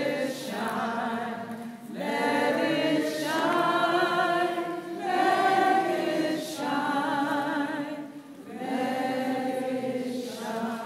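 Unaccompanied singing in slow, sustained phrases of about three seconds each, with short breaks between them and a slight vibrato on the held notes.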